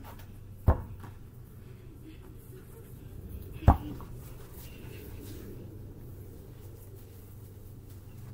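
A basketball hitting hard twice, about three seconds apart: two sharp thuds, the second the louder, over a steady low rumble.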